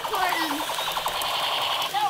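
Battery-operated toy soldier's electronic machine-gun sound effect: a rapid, buzzing rattle that runs steadily, with a brief falling voice-like cry at the start.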